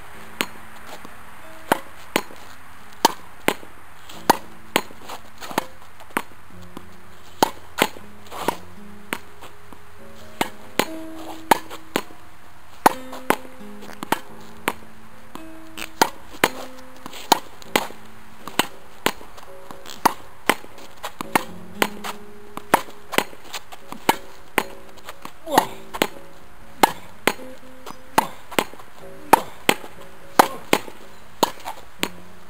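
A tennis ball being hit with two rackets against a practice wall: a run of sharp pocks from racket strikes and wall rebounds, about one to two a second. Background music with sustained notes plays underneath.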